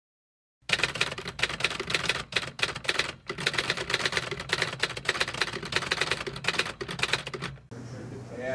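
Rapid typing: a dense, fast run of key clicks that starts just under a second in and stops near the end, over a low steady hum.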